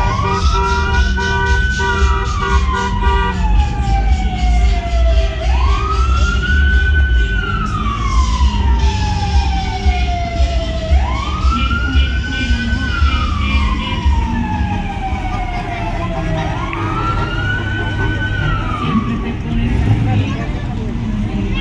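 A siren wailing in a slow cycle, four wails about five and a half seconds apart: each rises quickly, holds briefly, then falls away slowly. Under it runs the low rumble of slow-moving car engines.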